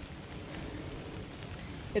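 Steady woodland background noise between words: a faint, even hiss with a low rumble and no distinct events.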